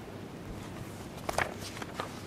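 Paper pages rustling and being handled at a lectern microphone, with a short cluster of crisp crackles about a second and a half in, over a low room hum.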